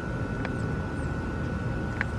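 A steady low rumble like a distant engine, with a faint steady high whine over it and one faint click about half a second in.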